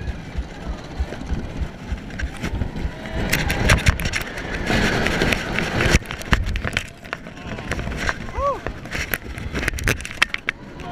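Roller coaster car rattling and clattering along its steel track at speed, with wind buffeting the microphone and many sharp knocks from the car and lap bar. A brief rising-and-falling cry from a rider cuts through about eight and a half seconds in.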